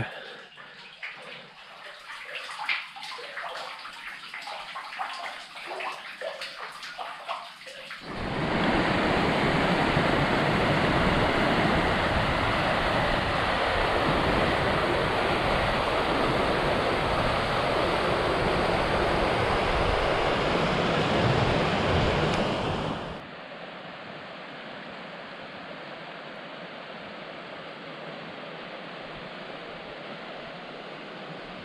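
Water trickling and dripping inside a small flooded mine adit. About 8 seconds in it gives way, at a cut, to a loud, steady rush of a moorland river running over white-water rapids. The rush drops to a quieter steady sound about 23 seconds in.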